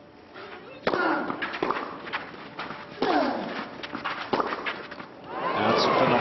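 Tennis rally on a clay court: sharp hits of racket strings on the ball, the serve about a second in and then more every second or so. Several hits are followed by a player's grunt.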